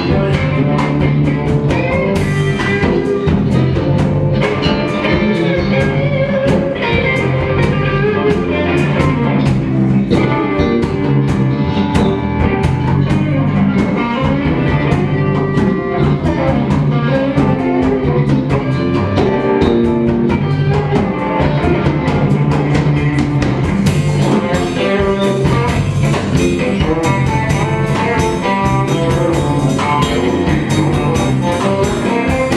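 Live blues band playing an instrumental passage with no vocals: electric guitars over bass guitar and drum kit, steady and loud throughout.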